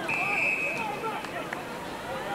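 An umpire's whistle gives one short, steady blast of under a second, over a murmur of crowd and player voices at the ground.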